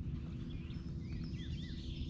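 Small birds chirping and singing in short, quick notes, over a steady low rumble.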